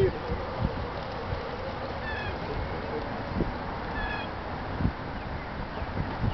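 Steady outdoor breeze hiss with two short, high animal calls about two seconds apart, each a brief chirp.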